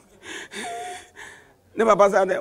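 A man gasping and sobbing in breathy catches, three in a row, the middle and longest carrying a short high whimper: a storyteller acting out a young calf crying.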